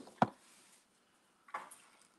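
Two sharp clicks about a quarter second apart, the second louder: fountain pens knocking against a wooden tabletop as they are put down and handled. A faint brief rustle follows about one and a half seconds in.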